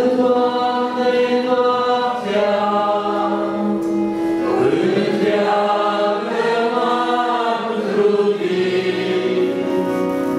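Group of voices singing a slow hymn in long held notes, accompanied by acoustic guitar and electric keyboard.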